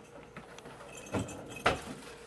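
Keys jingling and two short knocks a little after a second in, half a second apart, as bags and belongings are handled.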